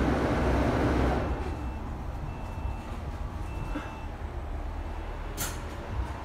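Engine and road noise heard from inside a double-decker bus. The noise drops away about a second in as the bus slows, leaving a low engine hum. Near the end there is one short, sharp hiss of air from the air brakes.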